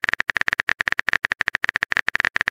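Phone keyboard typing sound effect: rapid, even taps, about ten a second, as a text message is being typed.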